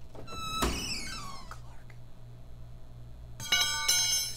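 A short metal squeal and a bang about half a second in, as a crowbar pries at a safe door. Near the end, a steel crowbar clatters onto a concrete floor in two quick hits and rings.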